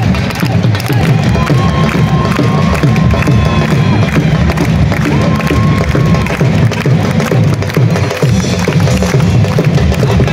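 Loud music with a steady drum beat over a cheering crowd of spectators. Two long held notes ring out above it, a longer one in the first half and a shorter one around the middle.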